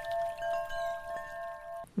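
A chime sound: several steady bell-like tones held together as one chord, with a few soft strikes. The chord cuts off suddenly just before the end.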